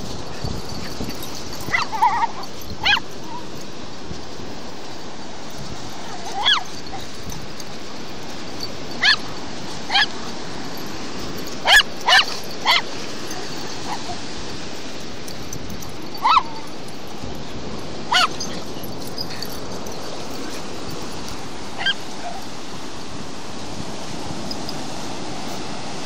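Dogs giving short, high-pitched barks and yips at irregular intervals, about a dozen in all, with a cluster around the middle. Behind them is the steady rush of ocean surf.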